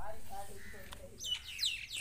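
Small birds chirping: a quick run of high, falling chirps starts about halfway through, over a faint voice at the start.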